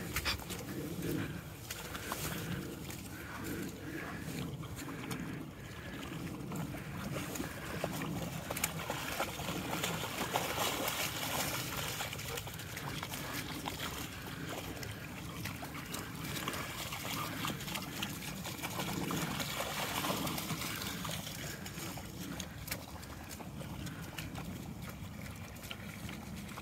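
Malamutes wading through shallow, muddy pond water, with continuous sloshing and splashing from their legs.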